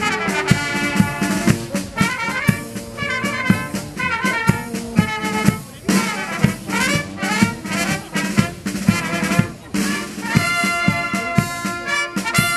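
A military brass band playing, with saxophones, trumpets, French horn and tuba over a steady bass-drum beat of about two strokes a second.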